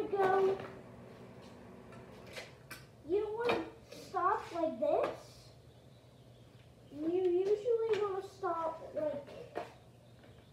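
A child's voice talking in three short spells, with a few faint clicks in the pause between the first two.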